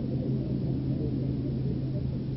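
A steady low-pitched hum runs throughout, with a muffled, indistinct rumble of background noise beneath it.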